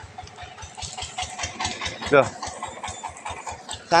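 Engine of a small homemade farm hauler running steadily at idle, a low even chug of about six beats a second. A short voice is heard about two seconds in.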